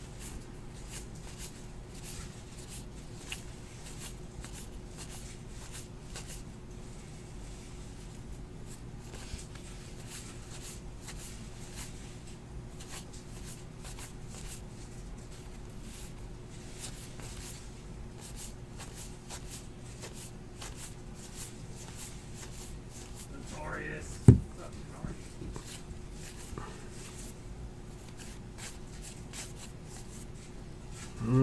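A stack of 2018 Topps Heritage baseball cards being sorted through by hand, cards slid off one pile onto another with soft, frequent flicks and rustles, over a steady low hum. A single sharp knock, the loudest sound, comes about three-quarters of the way through.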